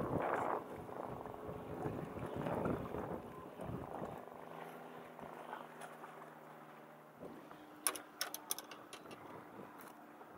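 Wind on the microphone and handling noise, then a faint steady hum from about four seconds in. Near the end comes a quick run of sharp clicks and knocks.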